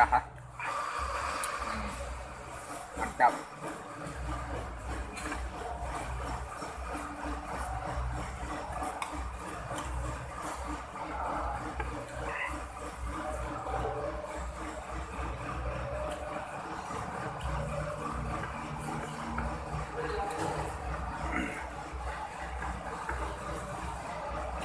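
Eating sounds of fried instant noodles being taken by hand and chewed, over a steady low hum and indistinct background voices, with a short sharp sound about three seconds in.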